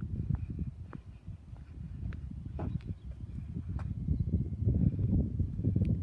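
Uneven low rumbling noise on a handheld phone microphone outdoors, the kind made by wind and handling while walking, with a few faint ticks.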